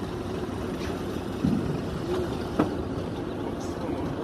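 Tractor engine running steadily, with a few brief clicks over it.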